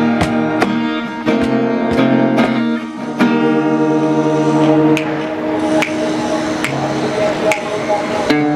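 Two acoustic guitars playing a song together, strummed and picked chords ringing, with hand-slapped cajon beats. The cajon beat is steady at first, then thins to a light hit about once a second from about three seconds in.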